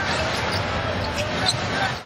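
Arena crowd noise during live play, with a basketball being dribbled on the hardwood court.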